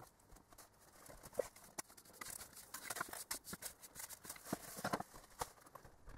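Faint, irregular clicks and taps of hands working small parts and tools, plastic and metal pieces knocking and rattling. The taps start about a second in and come thickly for a few seconds, then die away near the end.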